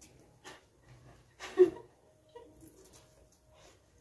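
Quiet eating sounds: people chewing and scooping biryani with their hands from plates, with a few scattered small noises and a brief louder one about a second and a half in.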